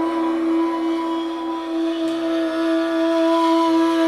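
Persian ney holding one long, steady note over a soft tanpura drone.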